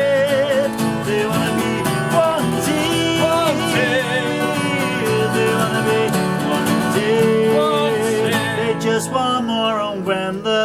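Acoustic guitars strummed together, with a man's voice singing a wavering melody over them.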